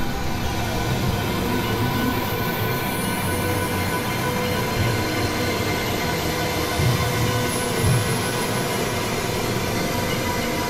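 Experimental electronic drone music: a dense, steady wash of synthesizer noise with many held tones layered through it, and two low swells about seven and eight seconds in.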